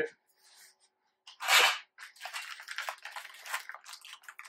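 Handling of a plastic parts packet: one short, loud rasp about a second and a half in, then irregular crinkling and rustling.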